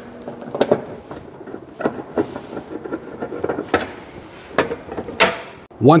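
Screwdriver backing out the screws of a transfer switch's sheet-metal cover and the cover being taken off: scattered sharp clicks and knocks, a few seconds apart.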